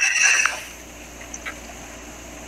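A short breathy voice sound fading out in the first half second, then a low steady hum of livestream background noise with two faint clicks.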